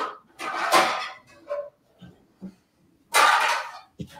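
Kitchen handling noise: two short rasping bursts, one about half a second in and one near the end, with a few faint knocks between.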